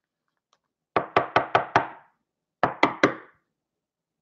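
Clear rigid plastic card holder tapped against the tabletop to seat the card: five quick knocks at about five a second, a short pause, then three more.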